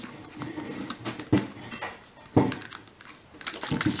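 Plastic spray bottles being handled as their trigger spray tops are screwed on: scattered plastic clicks and knocks, the two loudest about a second and a half and two and a half seconds in.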